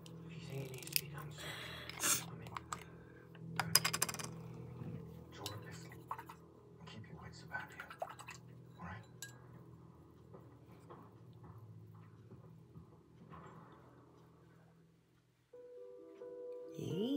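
Clicks and taps of a small plastic paint jar being handled, opened and set down on a tabletop, with light knocks of a paintbrush in a glass water jar; a quick run of clicks comes about four seconds in. A steady low hum sits underneath.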